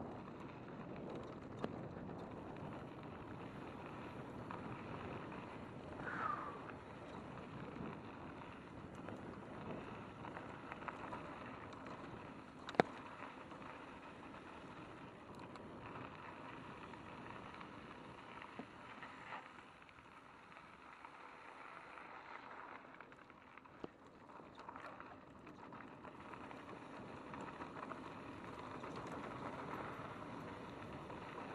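Mountain bike rolling down a gravel singletrack: steady tyre noise on loose gravel mixed with wind on the microphone, with small rattles and clicks from the bike. There is a brief squeak about six seconds in and a sharp click near the middle.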